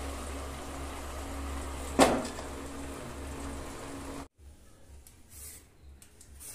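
Mutton curry sizzling as it is fried and stirred in an aluminium pressure cooker, with one sharp clank of the spatula against the pot about two seconds in. About four seconds in the sizzle cuts off suddenly, leaving faint scraping of a vegetable peeler on a carrot.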